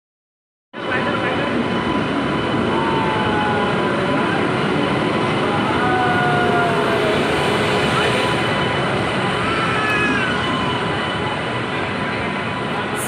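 Indian Railways electric locomotive and train at a station platform: a loud, steady rush of noise with a faint steady whine, starting suddenly about a second in. Faint voices sound underneath.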